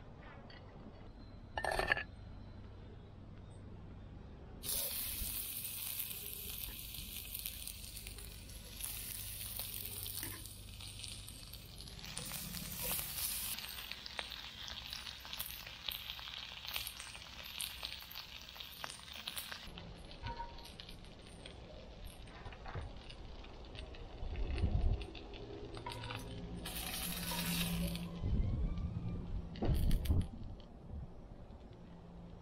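Brown-sugar-glazed grouper ribs sizzling in oil in a hot cast-iron skillet. The sizzle starts suddenly about five seconds in and dies down at around twenty seconds. A sharp clink comes about two seconds in, and near the end a low thump is followed by a shorter burst of sizzling.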